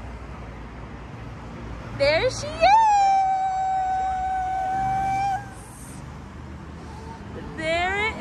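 A high voice sings one long held note, sliding up into it about two seconds in and holding it steady for a couple of seconds, then starts another rising note near the end, over low steady street noise.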